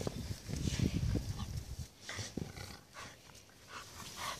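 A Labrador–American Bulldog cross panting as she plays with a ball, louder in the first two seconds and fading out near the end.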